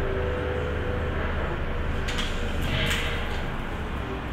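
Steady low room hum with a faint held tone, and a couple of soft rustles about halfway through as a person shifts position on a bed.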